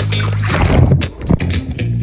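Background music with a steady beat, over water sloshing and splashing at the camera as it goes below the surface, loudest from about half a second to a second in.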